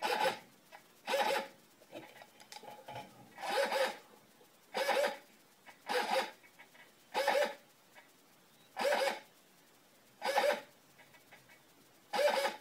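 Turnigy hobby servo on 6.6 V driving its arm out and back to centre in a centering test, its motor and gear train whining in eight short bursts about every second and a half.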